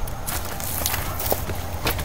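Footsteps on dry, eroded dirt: a few scattered steps about half a second apart over a steady low rumble.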